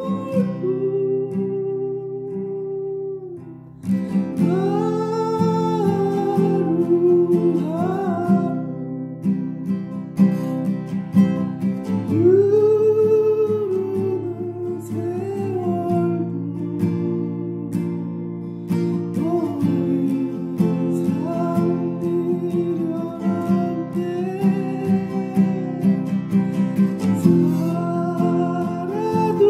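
A solo singer performing a slow Korean song to acoustic guitar accompaniment, with long, gliding sung notes over the guitar.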